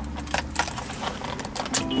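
Car keys jangling and clicking at the ignition of a 2014 Hyundai Santa Fe Sport as it is started, with a low rumble in the first half second.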